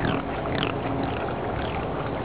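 Wet fingers rubbing together, giving about four short squeaks that fall in pitch. The skin is slick and squeaky clean from homemade potash lye water.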